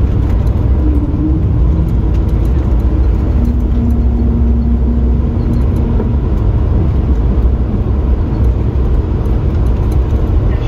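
Steady, loud low rumble of an airliner's cabin on the move, with faint light rattles over it.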